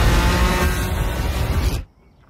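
Sports car engine running at speed, loud and steady, then cutting off suddenly near the end.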